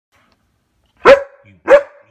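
A dog barking twice in quick succession, two loud sharp barks a little over half a second apart, aimed at a plastic bag lying in the yard.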